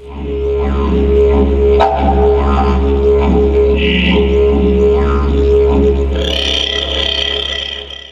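Didgeridoo playing a steady low drone with rhythmically shifting overtones; brighter upper tones come in near the end before it fades.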